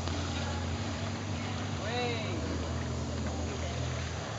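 Steady low drone of a wakeboard tow boat's engine running out on the water. Over it is a murmur of indistinct voices, with one voice rising and falling in pitch about halfway through.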